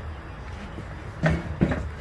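Low, steady background rumble with no distinct tool or engine sound, and a man's voice starting near the end.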